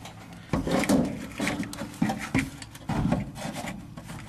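Irregular scraping and knocking of a metal seat-belt bracket and its hardware being handled and fitted against the truck cab's sheet metal, starting about half a second in.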